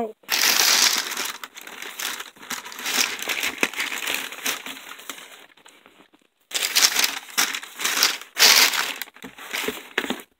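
Tissue paper crinkling and rustling as it is pulled back inside a shoebox, in two bouts with a short pause about six seconds in.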